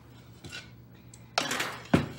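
Dishes being handled on a kitchen counter: a faint click about half a second in, then a short scraping rattle and a sharp knock near the end.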